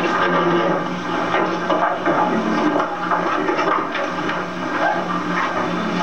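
Several people's voices talking over one another in a classroom, a muddled murmur with no clear words, over a steady low hum.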